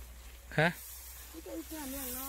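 Speech only: a short spoken word, then a longer spoken phrase near the end, over a faint steady hiss.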